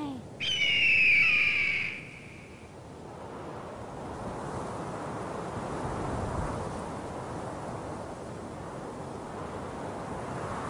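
A bird-of-prey screech, one long, slightly falling cry in the first two seconds, followed by a steady rush of wind that swells about halfway through and then holds.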